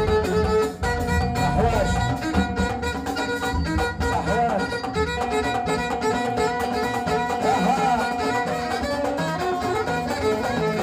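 Live Moroccan folk band music: a violin, bowed upright on the knee, plays a wavering melody over a steady beat of frame drum and hand drum.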